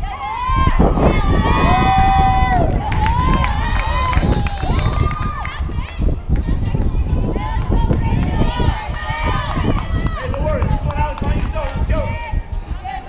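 Several high-pitched voices shouting and chanting in long, drawn-out calls across a softball field, over a steady low rumble.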